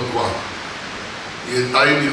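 A man speaking into a handheld microphone. The voice trails off at the start and resumes about one and a half seconds in, and the pause between is filled by a steady hiss.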